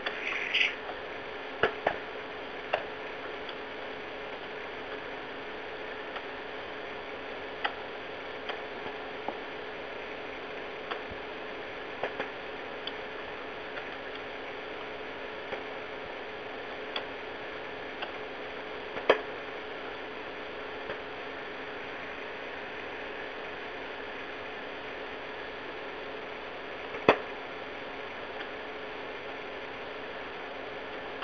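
Open telephone conference line: steady hiss and a low hum in narrow phone-line sound, broken by irregular clicks and pops. The two loudest pops come past the middle and near the end.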